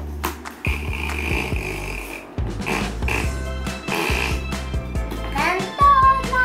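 Background music with a steady low beat, and a child's voice rising in an exclamation near the end.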